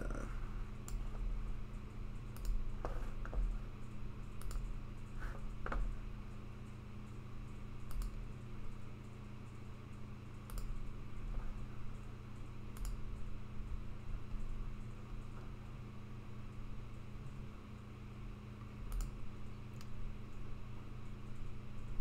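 Scattered clicking and tapping on a computer, a few seconds apart, over a steady low electrical hum.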